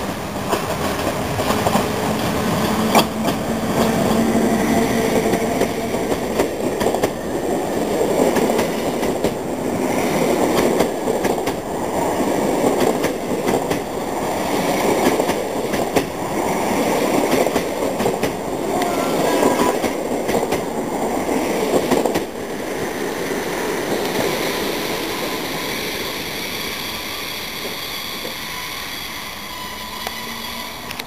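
An electric-locomotive-hauled passenger train passes close by, its wheels clattering over the rail joints as the coaches roll past. The sound dies down after about 22 seconds as the train moves away.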